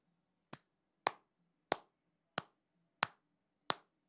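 One person clapping hands slowly and steadily: six single claps evenly spaced about two-thirds of a second apart, each sharp and short.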